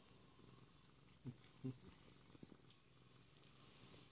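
A domestic cat purring faintly and steadily at close range. Two brief low sounds come a little over a second in.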